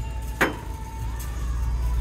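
A single sharp knock of a glass vase being set down on a shelf, about half a second in, over a steady low background hum.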